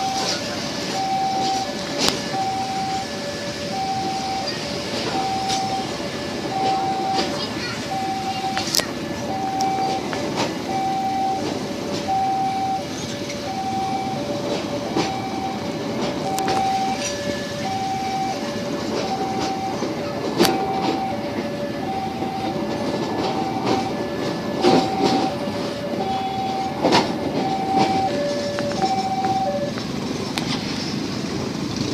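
Railway level-crossing warning alarm sounding a steady alternating high-low two-note chime, about one pair of notes a second. Under it, passenger coaches roll past with a steady rumble and an occasional sharp wheel clack.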